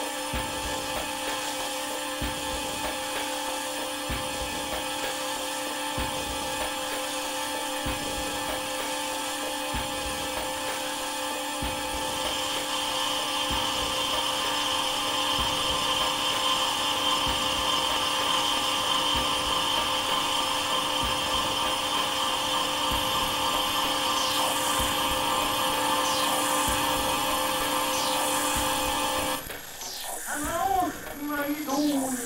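A steady, whining electronic drone of several held tones, part of the stage sound score, growing louder and brighter about twelve seconds in and cutting off suddenly just before the end. Faint low knocks come and go beneath it.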